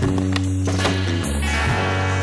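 Rock music with bass and guitar, with the sound of a skateboard on concrete mixed in, including a few sharp clacks.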